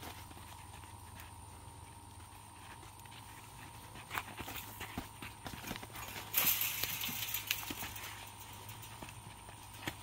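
Boxing sparring: scattered soft thuds of gloved punches and feet shuffling and scuffing on a dirt floor, with a longer stretch of scraping about six to seven and a half seconds in.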